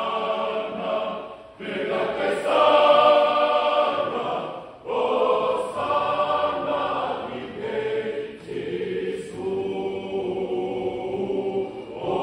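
Church choir singing in parts, many voices together, with short breaks between phrases about one and a half and five seconds in.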